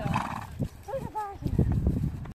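A ridden pony's hooves thudding dully on grass in an uneven beat, with a short pitched vocal sound about a second in.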